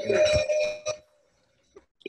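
A bell-like ringing from the street's evening cheer, heard through a video call, lasting about a second before the sound cuts out.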